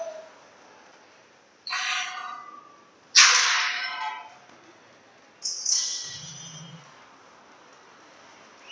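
Ice hockey play in an arena: three short noisy bursts, each about a second long and a second or so apart, over a quiet rink background.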